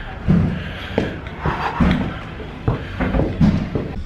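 A series of dull thumps and knocks, roughly one a second.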